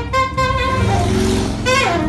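Improvised jazz on saxophone and double bass: a few quick saxophone notes, then about a second of rough, noisy sound over low bass tones, then a fast falling saxophone glide near the end.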